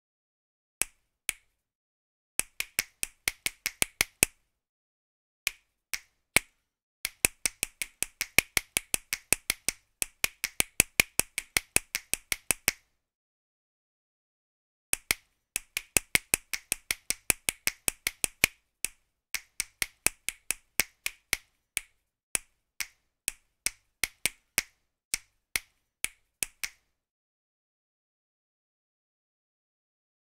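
Short, dry, click-like hits from the EZdrummer 2 virtual drum kit, auditioned one hit at a time. They come in uneven runs, from scattered single hits to about five a second, and vary in loudness. There is a pause of about two seconds in the middle.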